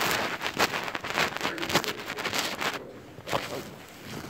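Paper rustling and handling noise close to the microphone, an irregular crackle for about the first three seconds, with one sharp click a little after.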